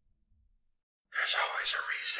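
Near silence, then about a second in a loud whispered voice begins, breathy and hissing, with no clear words.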